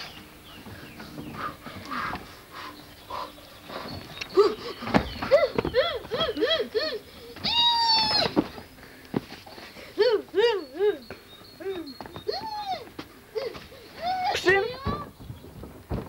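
Children's voices calling and shouting without clear words, in short rising-and-falling calls, with one long high-pitched shriek about halfway through. A few sharp knocks come in between.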